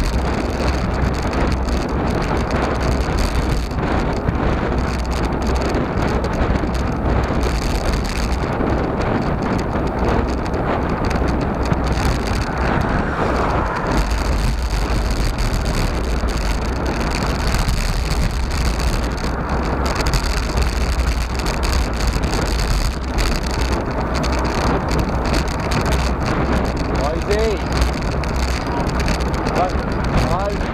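Steady wind rush and rumble on the microphone of a handlebar-mounted camera on a road bike riding at speed, mixed with tyre noise on asphalt.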